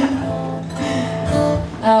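Acoustic guitar notes played and left ringing, with a short laugh near the end.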